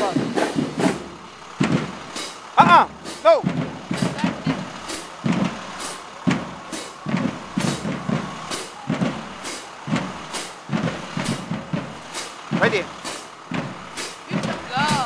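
A marching band's drumline keeping a steady walking cadence: sharp clicks about twice a second with lower drum hits under them. A few voices call out over it.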